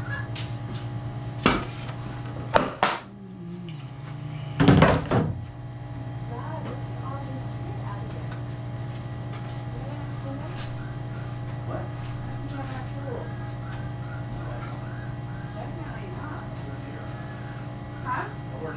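Plywood pieces knocked against and set down on a table saw: a few wooden thunks in the first five seconds, the loudest at about the fifth second, over a steady low machine hum.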